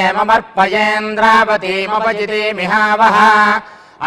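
Vedic chanting of Sanskrit blessing mantras: a voice reciting on a steady, nearly level pitch in phrases with short breaks, pausing near the end.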